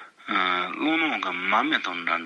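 Speech only: a man speaking in Tibetan, giving a Buddhist teaching. He starts after a brief pause.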